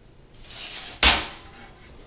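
A metal baking pan with a wire grill rack on it slid across a countertop with a short scrape, then set down with one sharp metallic clank that rings briefly, about a second in.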